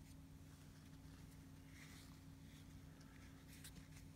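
Near silence: room tone with a steady low hum, and a few faint clicks of small trading cards being handled, the clearest about three and a half seconds in.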